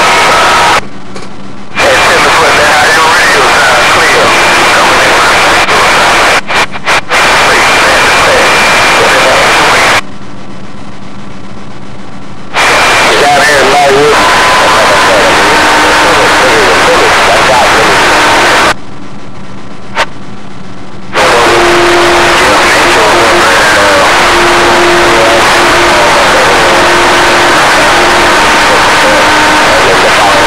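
Radio receiver's speaker playing heavy static with garbled, unintelligible voices and steady whistling tones from interfering signals. The signal drops to a quieter hiss three times, for one to two and a half seconds each, and flickers briefly near the quarter mark.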